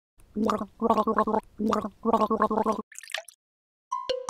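Cartoon gargling sound effect of a mouth being rinsed with water: a steady-pitched bubbling gargle in several short bursts, followed by a brief splashy noise about three seconds in.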